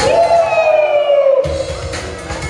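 Breakdance battle music: the drums drop out and one long held note slides slowly down in pitch, then the beat comes back in about a second and a half in.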